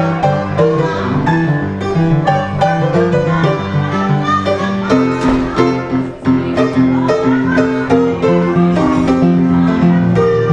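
Upright piano played solo in a brisk instrumental passage, with rhythmic chords under a melody line.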